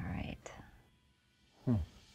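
Quiet, partly whispered speech: two short spoken bits with a near-silent pause between them, the second with a falling pitch near the end.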